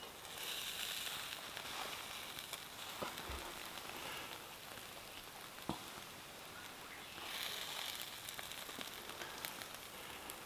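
Faint sizzling of food cooking in a hot pan, swelling twice, with a few soft clicks.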